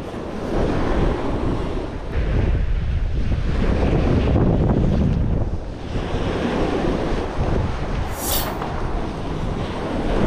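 Small waves breaking and washing up a sandy shore, with wind buffeting the microphone in low rumbles. A brief high hiss about eight seconds in.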